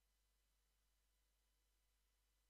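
Near silence: only a very faint, steady noise floor.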